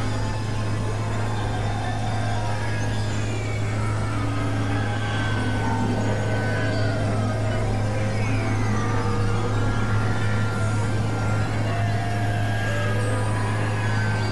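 Layered experimental electronic music with a steady low drone underneath. Many short tones and falling glides are scattered over a noisy bed.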